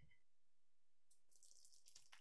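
Very faint pouring of evaporated milk from a can into a pot of simmering atole, starting about a second in; otherwise near silence.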